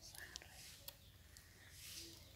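Near silence: a faint airy hiss that swells and fades, with a couple of light clicks and a brief faint chirp near the start.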